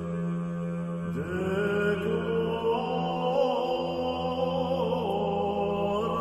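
Slow chanting voices holding long notes over a steady low drone. About a second in, another voice line comes in, sliding up in pitch.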